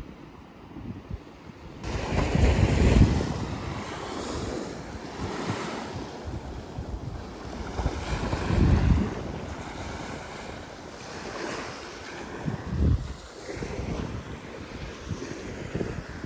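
Small sea waves washing onto a sandy shore, with gusts of wind buffeting the microphone in low rumbles several times.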